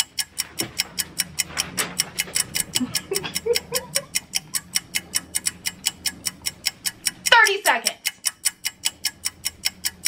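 Game-show countdown clock sound effect: fast, even ticking at about five ticks a second, counting down the minute. A short vocal sound breaks in a little past seven seconds.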